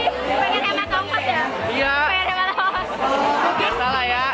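Lively, overlapping chatter and laughter of teenagers close by in a crowd, over background music with a repeating low bass.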